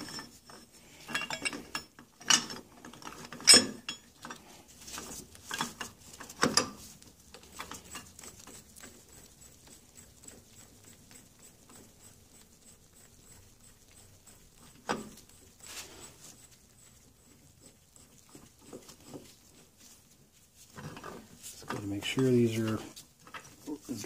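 Steel puller parts clinking and knocking as they are handled and fitted over an outboard gearcase's driveshaft housing: a handful of sharp metal clinks in the first several seconds and one more about fifteen seconds in, with quiet handling between.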